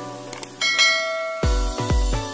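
A single bright bell ding, like a notification chime, rings out about halfway through over the tail of light plucked-string music. Then electronic dance music with a heavy bass beat starts abruptly about one and a half seconds in.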